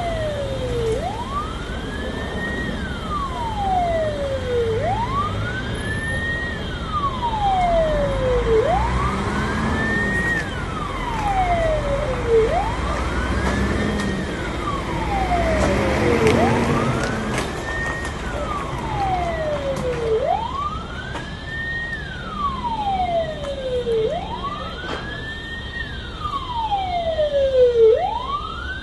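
Emergency vehicle siren wailing: a slow sweep that rises quickly and falls more slowly, repeating about once every four seconds, over a low steady rumble.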